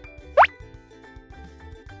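A single short rising 'bloop' cartoon sound effect about half a second in, over light background music.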